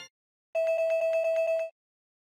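Slot game's electronic win-collect sound effect: a rapid bell-like ringing on one steady note, about a second long and starting about half a second in, as a 20 Kč win is counted into the credits.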